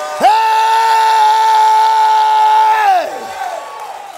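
A man's loud, long roar on "Hey!", held at one steady pitch for nearly three seconds before it falls away.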